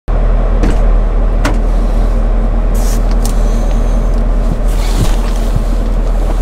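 Chevrolet Camaro engine idling steadily, heard from inside the cabin, with a few light clicks.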